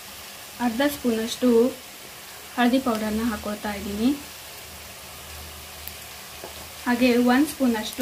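Sliced onions and green chillies frying in oil in a pan, a steady low sizzle. A voice speaks in three short phrases over it and is louder than the frying.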